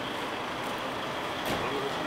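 Steady outdoor street noise with the hum of a vehicle engine, a short knock about a second and a half in, and a faint voice near the end.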